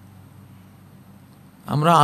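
A steady low hum of room tone, then a man's speaking voice starts near the end.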